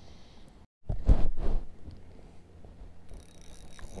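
A short, loud thump of handling noise on the camera microphone about a second in, as the rod and camera are moved while a fish is hooked. It is followed by a faint background with a thin, steady high whine that starts near the end.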